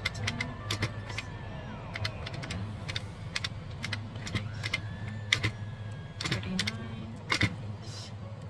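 Calculator keys being pressed in an irregular run of short, sharp clicks as a sum is tallied, over a steady low hum.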